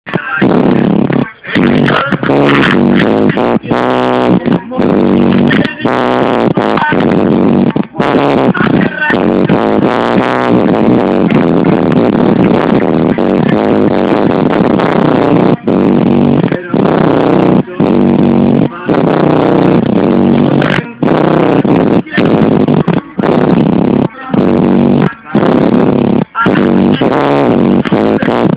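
Loud music with vocals played through a car audio system with subwoofers.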